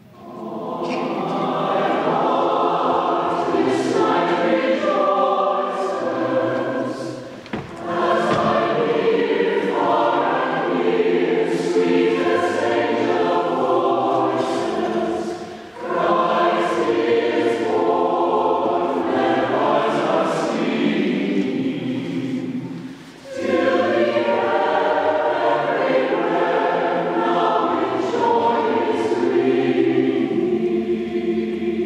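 Large mixed choir singing in a church, in phrases of about seven to eight seconds with a short break between each.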